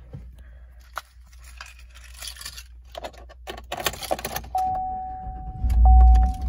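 Keys jangling and clicking in the ignition of a 2017 GMC Sierra pickup, with a steady high tone from about four and a half seconds in. Near the end, the truck's engine cranks and starts with a loud low surge.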